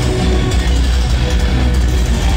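Metalcore band playing live at full volume: distorted electric guitars over heavy bass and drums, steady and dense with a strong low end.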